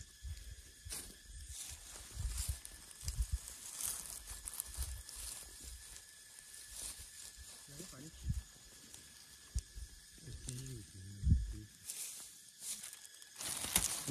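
Dry pine needles and leaf litter rustling and crackling as hands pick chanterelle mushrooms from the forest floor, in short irregular scrapes and snaps.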